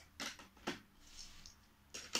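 Plastic Lego pieces being handled and set down on a baseplate: two faint, short clicks about a quarter second and three quarters of a second in, then light rustling.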